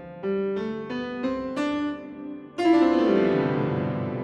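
Sampled piano playing a rising run of single notes through a convolution (impulse-response) reverb. About two-thirds in, a loud hit with a tone that falls in pitch rings out into a long reverb tail.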